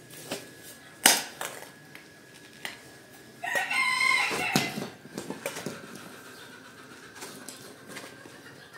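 Clods of dried, cracked mud on a carpet being pried and broken off with a plastic scraper, giving sharp knocks and crumbling clatter, the sharpest about a second in. A rooster crows once, for about a second, midway.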